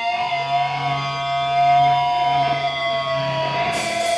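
Electric guitar feedback holding one steady, slightly wavering tone over a held low bass note. A bright hiss joins near the end.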